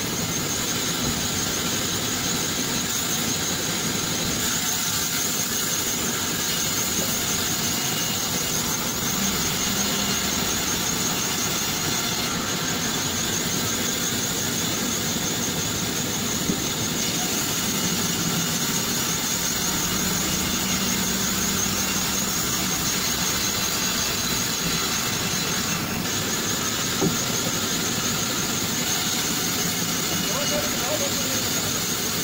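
Large vertical band saw ripping a date palm trunk lengthwise: a steady high-pitched whine from the running blade over the constant drone of the machine.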